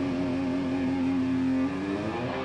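A single held note from an amplified electric guitar rings on steadily with no drums, and cuts off about one and a half seconds in.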